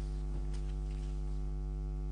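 Steady electrical mains hum: a constant low buzz with a stack of even overtones and no other sound.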